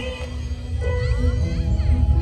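A children's choir of about a hundred school students singing live: a sung phrase ends, and about a second in a new long note begins, with some voices sliding in pitch above it.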